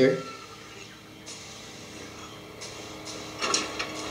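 Quiet film soundtrack playing under the commentary: faint sound effects with a few soft knocks and clanks, and a short louder burst about three and a half seconds in.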